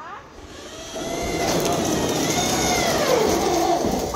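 An electric power tool's motor running loud, its whine rising and then falling in pitch over a couple of seconds.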